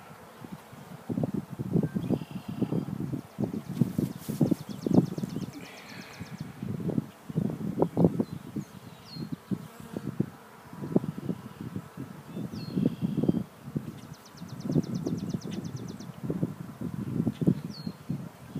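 Honeybees buzzing around an open hive, the buzz swelling and fading irregularly as individual bees fly close past the microphone.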